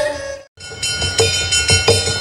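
Lakhon Basak theatre ensemble music: a held note fades out into a moment of silence about half a second in, then the music starts again with sustained high tones and a few sharp percussion strikes.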